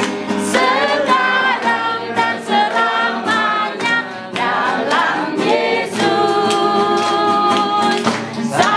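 A group of men and women singing a song together, with hands clapping in time to it.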